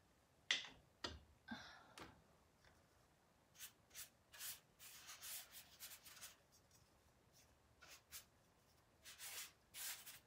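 A paintbrush loaded with chalk paint stroking faintly over the wooden cabinet frame in short, repeated brushing strokes. A few short knocks and scrapes come in the first two seconds, before the brushing.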